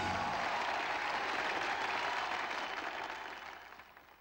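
Audience applause, steady and then fading out over the last second or so.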